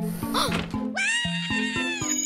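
Cartoon background music with a short pitched cartoon vocal sound, then a steady electronic sci-fi beam sound effect starting about a second in.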